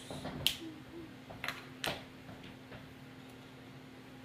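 Hard plastic Lego Bionicle pieces clicking as they are pressed and snapped together by hand: three sharp clicks in the first two seconds, the loudest about half a second in. After that only a faint steady hum remains.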